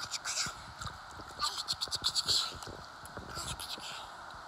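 Pool water splashing and lapping right against a phone microphone held at the water's surface: quick wet clicks and hiss in three short spells.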